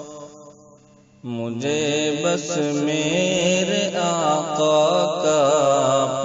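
A man's voice chanting an Urdu naat, a devotional song in praise of the Prophet. The sound dies away almost to a pause in the first second, then the voice comes back with long, wavering held notes.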